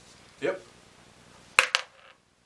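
A single six-sided die thrown into a plastic tub used as a dice tray, clattering against the plastic in a quick run of a few sharp clicks near the end.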